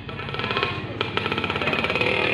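Brass band playing a quiet passage: a fast, even drum roll over low held notes.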